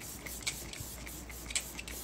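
A Glow Recipe facial mist in a pump spray bottle, spritzed onto the face: soft, faint sprays.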